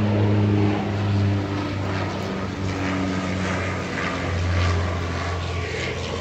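A small airplane flying overhead: a steady engine drone with a pitch that drifts slightly.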